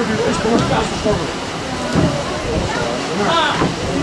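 Indistinct voices of footballers and onlookers calling and talking on the pitch, in short scattered bursts over a steady rushing background noise.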